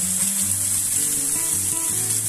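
Steady hiss of a small waterfall's water splashing down a rock face, with background music holding sustained notes.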